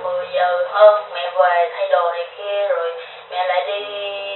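A person talking over a telephone line: a thin voice with no low or high end, speaking in short phrases with brief pauses.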